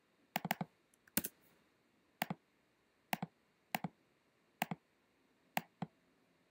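Computer mouse clicking: sharp single clicks and quick double clicks, roughly one every second.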